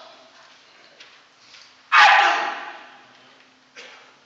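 A man's voice shouting one loud word about two seconds in, its echo dying away in a large hall, with quiet pauses either side.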